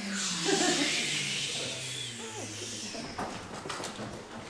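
A group of adults quietly laughing and murmuring as they sit back down, with some rustling and a few knocks near the end.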